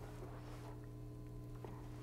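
Quiet room tone with a steady low electrical hum and a few faint held tones underneath, broken by one light click late on.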